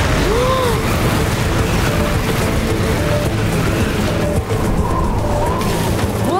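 A steady rushing wind sound effect of a small cartoon whirlwind, under background music.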